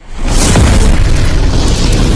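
Explosion sound effect: a sudden loud boom at the start that carries on as a sustained, heavy rumble.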